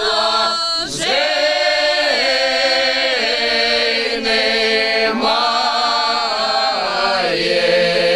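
Mixed men's and women's folk ensemble singing a Kuban Cossack song a cappella, with long held notes and a short break for breath about a second in.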